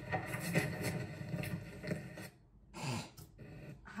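Hurried footsteps with rubbing, scuffling noise as a man runs off. The noise cuts off abruptly a little over two seconds in, and a brief low voice sound follows near the end.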